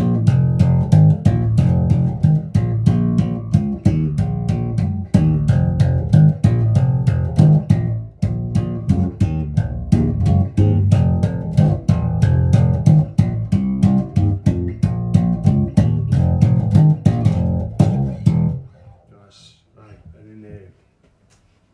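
Richwood (now SX) 1970s-style Jazz bass copy played through a Laney RB4 bass amp and a 1x15 extension cabinet. It plays a fast, rhythmic run of percussive notes, slapped with the thumb, and stops about a second and a half before the end.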